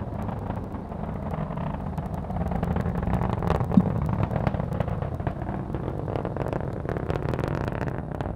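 Atlas V 511 rocket in powered ascent, its RD-180 first-stage engine and single solid rocket booster heard from the ground as a steady low rumble with crackling. There is one sharper crack about four seconds in.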